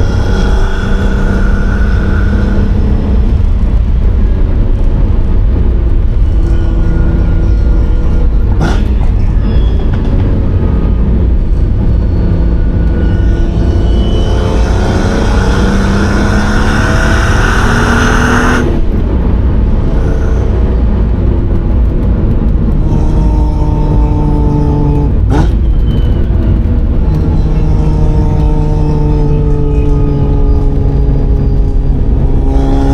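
Ferrari Testarossa's flat-12 engine heard from inside the cabin while driving, its revs rising and dropping in steps through the gears, over a steady low road rumble. About halfway through it gets louder, pitch climbing, as it accelerates hard for a few seconds. Two sharp clicks come at about nine seconds and again near twenty-five seconds.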